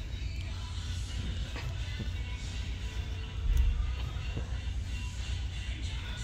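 Film soundtracks with music playing through computer speakers, several at once, over a heavy low rumble; a louder low boom about three and a half seconds in.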